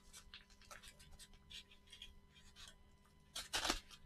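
Faint scratching and rustling of a paper mailing envelope being cut into with an X-Acto craft knife, with a louder burst of scraping near the end.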